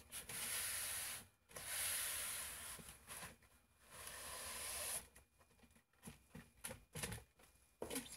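Gloved hands rubbing along painter's tape to press it down onto a canvas: three long rubbing strokes in the first five seconds, then a few light knocks and handling noises as the canvas is taken hold of.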